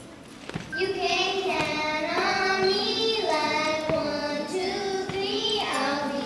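Young girls singing a melody, the singing starting about a second in, with soft hand-drum beats underneath.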